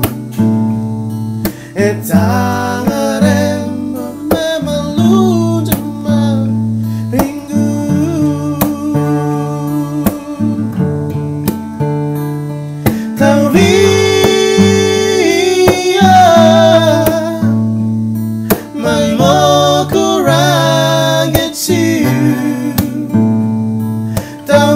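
Two male voices singing a song with long held notes, accompanied by two acoustic guitars.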